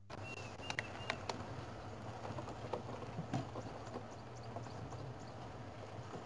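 Game-drive vehicle moving slowly over a bumpy dirt track: a steady low engine hum with frequent knocks and rattles from the body. In the first second or so, three short whistled bird notes, fitting the Diederik cuckoo named just before.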